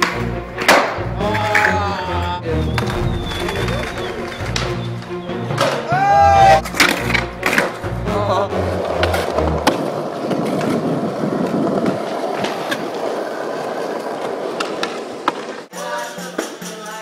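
Skateboard rolling and clacking on stone paving, with sharp knocks from the board. Music with a deep stepping bass line plays under it and drops out about ten seconds in, leaving the rough rolling noise of the wheels until it cuts off just before the end.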